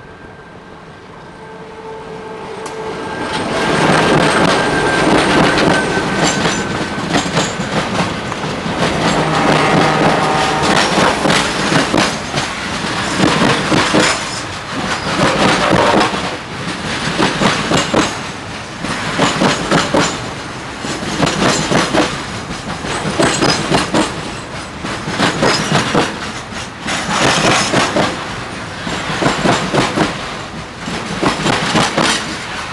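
A freight train passing close by: two Alco diesel locomotives running in multiple approach, and the sound builds to a loud pass. Tarp-covered pulp wagons follow, their wheels clattering rhythmically over the rail joints.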